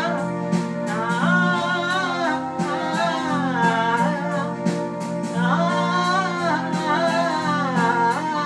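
A woman singing a Tamil song, her voice gliding between long held notes, to her own accompaniment on a Technics electronic keyboard playing sustained chords and bass over a steady beat.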